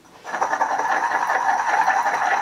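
Stone pestle grinding fast and steadily round a stone mortar holding hand sanitizer gel, a continuous rapid rasping of rock on rock. It starts about a third of a second in, after a brief hush.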